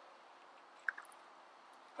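Faint steady outdoor background hiss, with one brief light click a little under a second in, followed by a softer one, as a strapped-on trail camera is handled.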